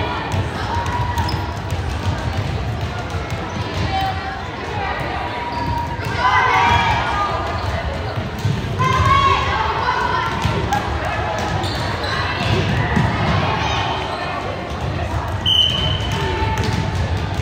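Gymnasium sounds during a volleyball match: volleyballs thumping on the hardwood floor and voices echoing in the large hall, with louder calls about six and nine seconds in. A short, high whistle blast comes near the end.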